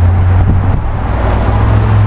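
Steady low engine rumble of a nearby idling vehicle, with a haze of street noise over it.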